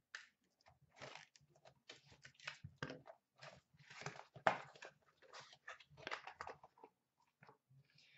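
Faint, irregular crinkling and scraping of a small white cardboard box being handled and its lid flap pulled open.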